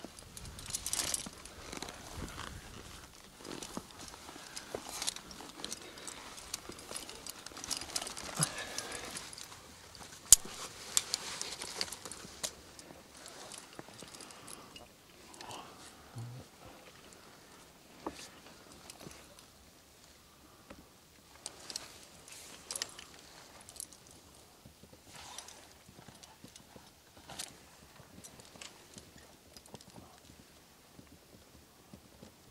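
A rock climber's gear clicking and clinking on a granite crack: metal hardware knocking against itself and the rock, with scrapes, busiest in the first dozen seconds and a single sharp click about ten seconds in, then sparser clicks.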